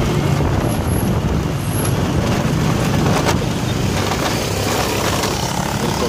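Steady engine and road noise of a vehicle driving along a city street, with a short sharp tick about three seconds in.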